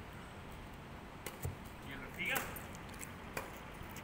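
Badminton rackets striking a shuttlecock during a rally: a few light, sharp clicks roughly a second apart.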